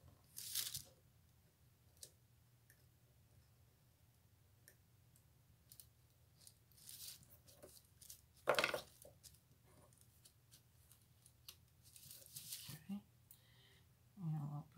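A craft knife blade cutting sticker paper in a few short, scratchy strokes, the loudest a little past halfway, with light paper handling between them.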